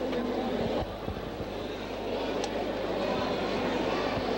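Indistinct murmur of voices in a busy hall over a steady low electrical hum, with one brief faint tick about two and a half seconds in.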